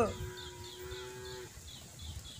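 A pause in a man's sung Bhojpuri devotional song. His held note falls away right at the start, then a faint steady tone lingers for about a second and a half. Faint, quick bird chirps repeat high above it.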